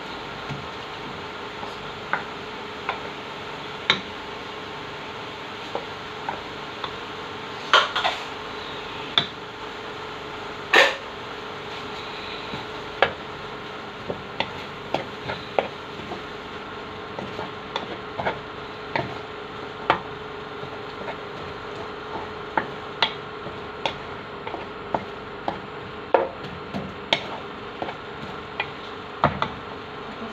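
Wooden spatula stirring in a large cooking pot, knocking against its sides and rim at irregular intervals, louder knocks about 8 and 11 seconds in, over a steady hum.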